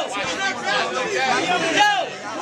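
Speech only: a man rapping a cappella into a microphone, with other men's voices talking over him.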